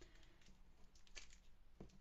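Near silence, with faint ticks and scrapes about a second in and again near the end: a Tombow liquid glue bottle's sponge tip being pressed and rubbed on a small piece of patterned paper.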